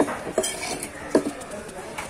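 Large fish-cutting knife chopping through trevally flesh onto a wooden chopping block: a few sharp chops, the loudest a little past a second in.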